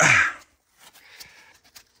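A short breathy exhale, then faint rustling and scraping as a foam pipe-insulation sleeve is pulled out from a gap behind door trim.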